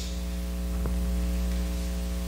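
Steady electrical mains hum with a buzz of evenly spaced higher overtones, coming through the microphone and sound system. There is one faint tick just before a second in.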